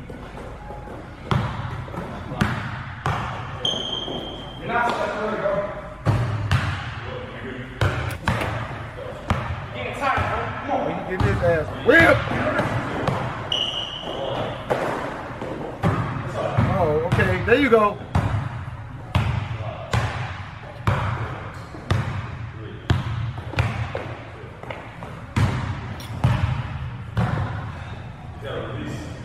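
A basketball being dribbled on an indoor hardwood court, bouncing in a steady rhythm of about one or two bounces a second, with two short high sneaker squeaks on the floor.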